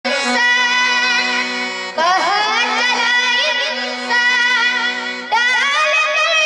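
Bhajan music: a harmonium holding steady chords, with a boy's singing voice coming in over it about two seconds in and again near the end.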